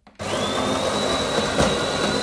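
The built-in coffee grinder of a De'Longhi ECAM 23.120.B bean-to-cup machine starts about a quarter second in, grinding beans at the start of a brew cycle. It runs steadily, with a high motor whine that rises briefly as it spins up.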